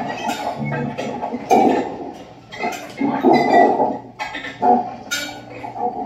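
Free improvisation by an ensemble of alto saxophone, violin, electric guitar and electronics, played with extended techniques: irregular stop-start bursts of rough, animal-like sound with sharp clicks and clinks between them, and no steady beat or melody.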